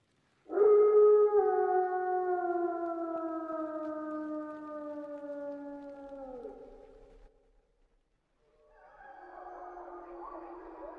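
A wolf howling: one long call that starts loud about half a second in, slowly falls in pitch and fades, then drops away. Near the end several wolves take up a chorus of overlapping howls.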